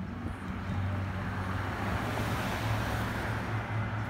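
Street traffic: a vehicle engine running steadily under a swell of tyre and road noise that builds and fades through the middle as a pickup truck drives past and away.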